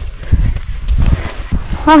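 Footsteps of a trail runner climbing a steep dirt path, dull thuds about twice a second.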